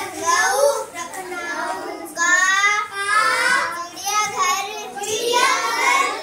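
A young girl singing a poem aloud from her Hindi school textbook, in a high child's voice, in short phrases with brief pauses between them.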